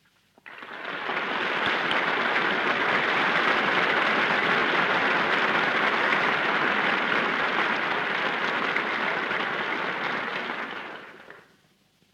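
Studio audience applauding on a 1936 radio broadcast recording. The applause swells up in the first second, holds steady for about ten seconds, then dies away near the end.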